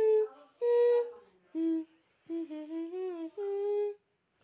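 A person humming a slow tune in about five held notes with short breaths between them.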